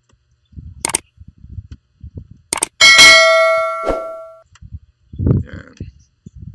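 A bright, bell-like ding about three seconds in, ringing and fading over about a second and a half, just after a couple of sharp clicks; it matches the notification-bell sound of a subscribe-button animation. Around it, quieter scraping and rustling of scissors cutting the tape on a cardboard box.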